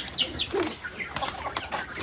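Fowl clucking with a few short, high falling chirps, while a pigeon is caught by hand off a coop shelf: scuffling and rustling that grows busier near the end.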